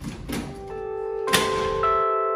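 A click and a short rattle at the very start as a key works the lock of a storage-unit door, then background music with held notes fades in and grows louder, with a sharp knock about a second and a half in.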